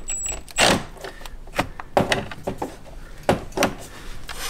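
Scattered clicks and knocks of a socket tool and small metal hardware being worked around a motorcycle's battery compartment, with a longer clatter about half a second in.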